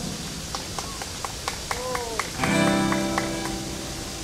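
Acoustic guitar: a few light plucked notes and string taps, then a full chord strummed about two and a half seconds in and left ringing, the opening of a song's intro.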